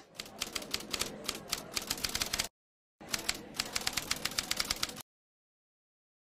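Rapid typing clicks, like keys struck in quick succession, in two runs of about two and a half and two seconds with a short break between, then cutting off suddenly into silence.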